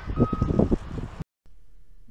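A high electronic beep repeating in the background under the tail of a man's voice, all cut off abruptly a little over a second in, followed by a faint low hum.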